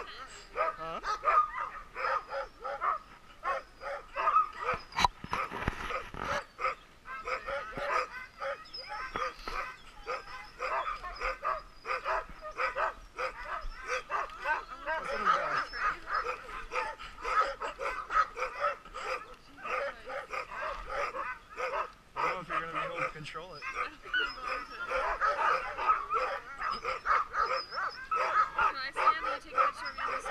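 A pack of harnessed sled dogs (huskies) barking and yipping together in a continuous, overlapping chorus. These are teams staked out on their gang lines, waiting to run.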